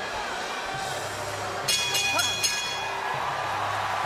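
Arena crowd noise, then a boxing ring bell struck several times in quick succession a little under two seconds in, ringing out to mark the end of the round.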